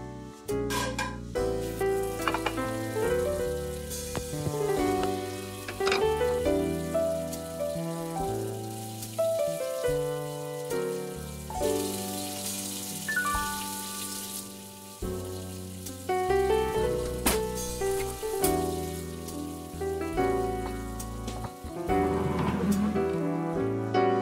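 Piano music plays throughout. About halfway through, a hiss of water runs from a kitchen tap into a sink for a few seconds.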